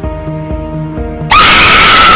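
Music plays, then about one and a half seconds in a sudden, very loud, high-pitched scream cuts in: a jump-scare screamer sound effect.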